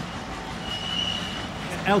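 Road traffic: cars passing close by with a steady low rumble of engine and tyre noise. A thin high-pitched tone sounds for about a second in the middle.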